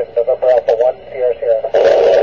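A man's voice coming in over an FM amateur-radio downlink from the International Space Station, thin and band-limited. Near the end the voice gives way to a rush of radio static as the transmission drops.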